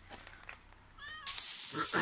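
A cat meows once, briefly, about a second in. Just after, meat suddenly sizzles loudly on a hot metal grill plate over a fire.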